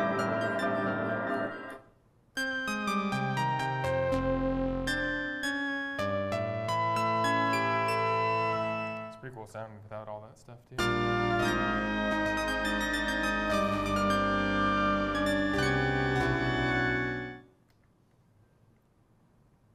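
Moog One polyphonic analog synthesizer playing chords on a brass-like preset that makes heavy use of a bucket-brigade delay effect. The playing breaks off briefly about two seconds in and dips to faint wavering tails around nine to ten seconds. It then resumes and stops shortly before the end.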